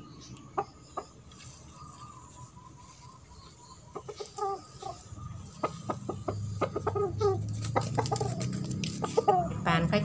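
Chickens clucking, with short calls coming more often from about four seconds in.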